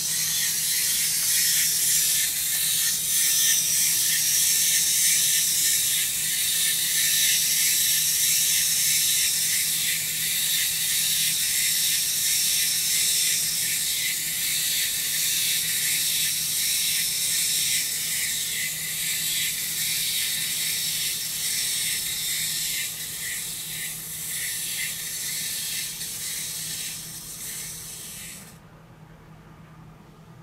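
A loud, steady, high-pitched hiss that runs without a break and cuts off suddenly near the end, over a faint low hum.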